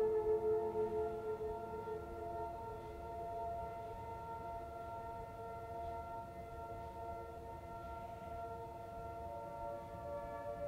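Soft ambient background music of several sustained ringing tones, easing down in the first couple of seconds and then holding steady.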